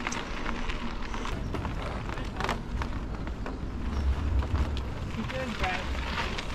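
Wind buffeting the microphone of a moving bicycle, with the tyres rumbling over a wooden boardwalk and a few sharp rattles; the wind rumble swells about four seconds in.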